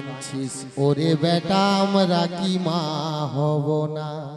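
A man singing an ornamented Baul vocal line into a microphone, his voice wavering and bending in pitch, with electronic keyboard accompaniment.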